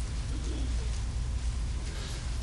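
Room tone picked up by the pulpit microphone: a steady low hum, with a faint soft sound about half a second in.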